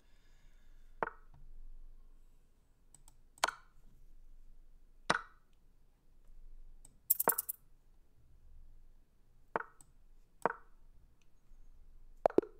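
Chess.com's on-screen move sounds: six short, sharp wooden clicks of pieces being placed, one or two seconds apart, as the last rapid moves of a blitz endgame are played.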